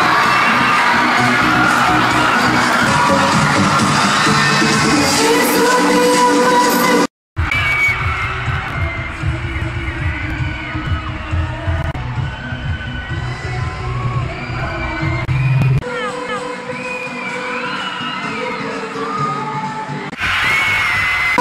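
Live pop music played over a stage sound system, with an audience cheering and screaming. A brief silent gap comes about seven seconds in. After it, a heavy bass beat comes through under the crowd's high screams.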